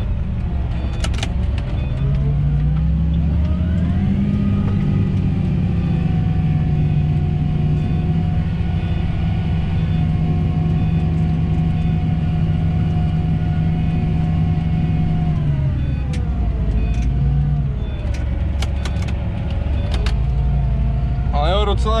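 John Deere tractor engine heard from inside the cab, pulling a seed drill. It rises in pitch a couple of seconds in, holds steady, then drops back down about three quarters of the way through, with a brief rise and fall soon after. A few light clicks come from the cab controls.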